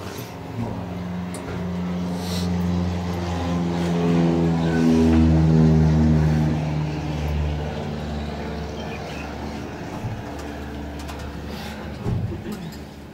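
A motor vehicle's engine running steadily, getting louder to a peak about halfway through and then dying away.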